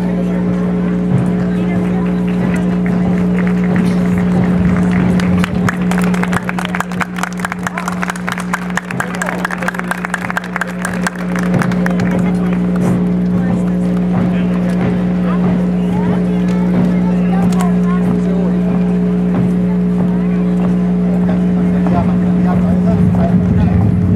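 A steady low hum holds at one pitch throughout. From about a quarter to half of the way in, a fast run of sharp taps or clatter sounds over it.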